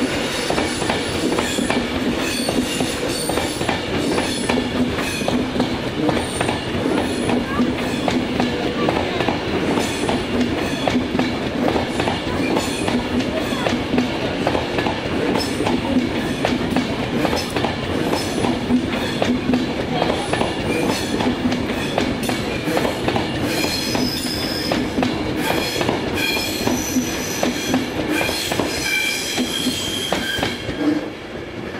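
Class 390 Pendolino electric trains passing close at speed: a steady, loud rush of wheel and air noise with rapid rail clatter. High whining tones join in for the last few seconds.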